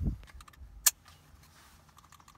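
Handling noise of a stainless-steel holster mount being clipped onto a holster's belt clip: a dull knock at the start, then one sharp metallic click a little under a second in.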